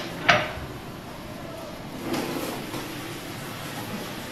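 A single sharp clack of hard plastic about a third of a second in, as the automatic cooking machine is handled, followed by steady low background noise.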